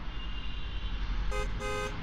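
Phone app notification alert: two short horn-like electronic tones in quick succession, about a second and a half in, over a faint steady hum.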